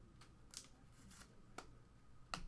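Near silence with a low hum, broken by four or five faint, short clicks and rustles of trading cards being handled.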